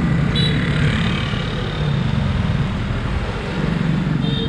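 Street traffic with motorbikes and a car passing close by: a steady low hum of small engines and road noise. A short high beep sounds about half a second in.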